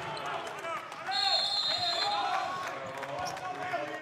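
Live basketball game sound in a sparsely filled arena: a ball bouncing on the court amid indistinct voices of players and spectators, with a steady high tone held for about a second, beginning a little over a second in.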